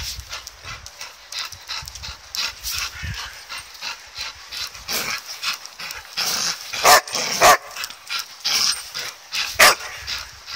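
Excited border collies yipping and whining in quick short calls while tugging at a football, with three louder yelps about seven seconds in, half a second later, and near the end.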